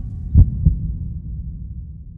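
A pair of deep thumps about half a second in, over a low rumble that slowly fades.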